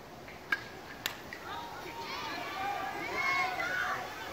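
Two sharp knocks about half a second apart, then distant voices of players and spectators calling out at a baseball game, getting louder toward the end.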